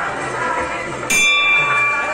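Music playing, with a bell struck once about a second in and left ringing.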